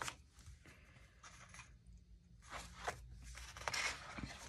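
Faint rustling of paper and cardstock pages being turned in a wire-ring bound book, mostly in the last second and a half.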